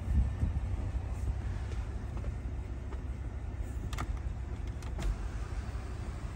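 Steady low rumble inside a parked SUV's cabin, with two faint clicks about four and five seconds in.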